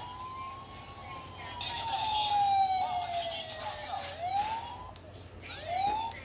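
Toy sheriff's badge playing an electronic police siren sound after its button is pressed: a wailing tone that rises, falls slowly over about three seconds, then starts rising again near the end.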